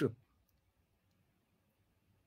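A man's spoken word trailing off at the very start, then a pause of near silence broken only by a faint click about half a second in.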